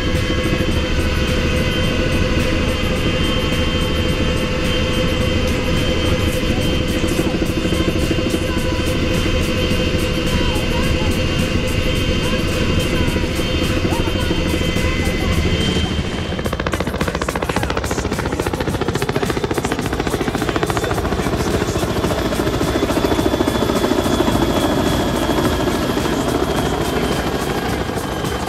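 CH-46 Sea Knight tandem-rotor helicopter heard from inside in flight: a steady whine over a fast, even rotor beat. The sound shifts in character about halfway through.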